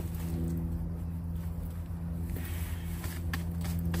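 A steady low mechanical hum that holds one pitch, with faint rustles and light clicks of compost being scooped and handled.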